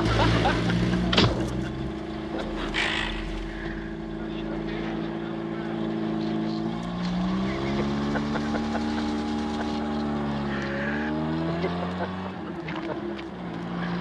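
Old car's engine running as the car drives off, its note climbing as it gathers speed, then dropping and climbing again near the end. A sharp knock about a second in.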